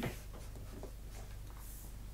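Felt-tip marker pen writing on paper: a few faint, short scratchy strokes.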